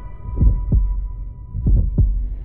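Heartbeat sound effect in a trailer soundtrack: low double thumps, two pairs about a second and a quarter apart, over a faint steady high tone that fades away.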